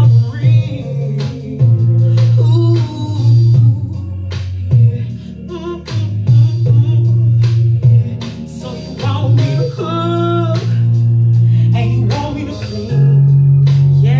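Woman singing a southern soul song live into a handheld microphone over a DJ-played backing track with a heavy bass line. About ten seconds in she holds a long note with vibrato.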